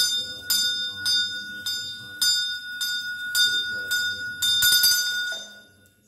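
A small brass hand bell (ghanta) rung steadily during a homam, about two strokes a second with a clear ringing tone, fading out shortly before the end.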